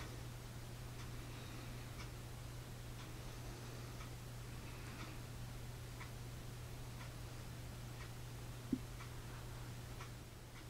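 Faint, regular ticking at one tick a second, like a clock, over a steady low hum. A single soft thump sounds near the end.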